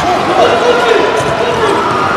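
Indoor handball court sound during play: a voice calls out over the hall's crowd noise while the handball is bounced on the court.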